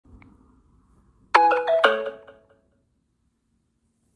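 A short bell-like chime of a few quick notes, stepping down in pitch, sounds about a second and a half in and rings away within about a second. A faint low rumble comes before it.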